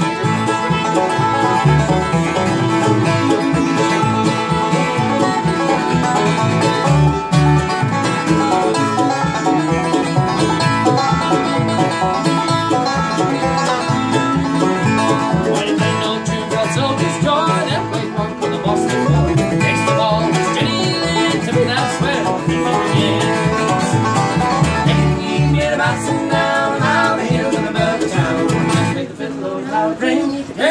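Acoustic bluegrass string band playing an instrumental break: fiddle, mandolin, banjo, acoustic guitar and upright bass together at a steady lively pace.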